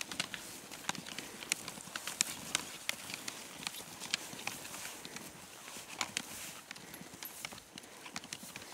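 Snowshoe footsteps crunching in deep snow: irregular short, sharp crunches, about two or three a second.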